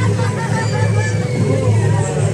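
Parade street noise: a crowd talking over a loud, steady low rumble from a passing float, with music playing behind.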